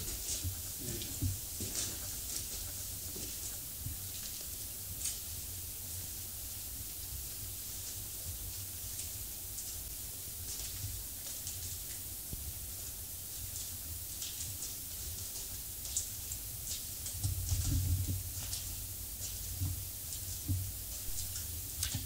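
Quiet room tone: a steady high hiss with scattered faint clicks and taps. A low rumble lasts a second or two about three-quarters of the way through.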